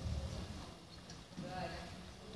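Faint, muffled hoofbeats of horses jogging on soft arena dirt, with a faint voice briefly about one and a half seconds in.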